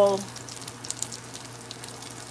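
Battered calamari rings frying in shallow oil in a pan: a steady sizzle with scattered small crackles.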